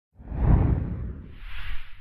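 Whoosh sound effect for an animated title: a noisy sweep with a deep rumble, loudest about half a second in, then a second, higher swoosh near the end before it fades.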